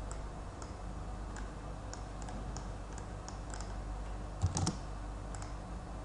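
Light, scattered computer keyboard keystrokes and mouse clicks over a steady low hum, with one louder knock about four and a half seconds in.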